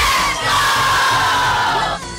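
A crowd of schoolchildren shouting and cheering together, one long group yell that starts suddenly and slowly falls in pitch.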